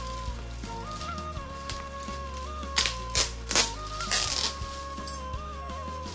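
Metallic foil gift wrap crinkling as it is pulled open by hand, with a few sharp crackles about three seconds in, over background music with a steady melody and bass.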